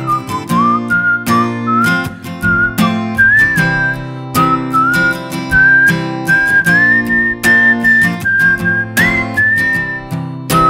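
A man whistling a melody into the microphone over a strummed acoustic guitar; the whistled line moves in steps and short slides, climbing to a higher held note near the end.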